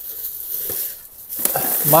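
Plastic and paper rubbish bags rustling and crinkling as a gloved hand pushes them aside in a bin; the rustle starts suddenly and dies away about a second in.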